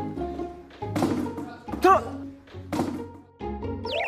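Edited-in background music with plucked notes, over which a small ball strikes hard surfaces three times, about a second apart, as it bounces on the floor and off a plastic bin. The middle strike is the loudest. Just before the end a wobbling, falling-pitch comic sound effect starts.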